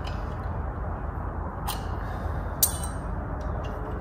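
Two light metal clinks, about a second apart, from a steel trailer anti-sway bar being handled, the second with a short ring, over a steady low background rumble.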